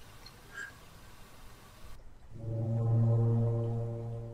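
A low, steady drone on one held pitch with several overtones. It swells in a little past two seconds and fades away toward the end.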